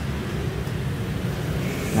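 Steady low background rumble and hum, with one or two faint clicks.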